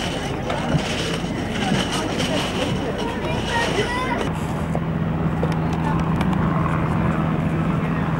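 Background chatter of people's voices, with a steady low hum that gets louder about halfway through.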